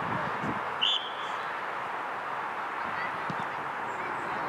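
A single short, shrill whistle blast about a second in, typical of a referee's whistle, over a steady outdoor hiss.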